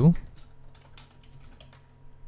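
Computer keyboard typing: a quick run of light key clicks as commands are entered.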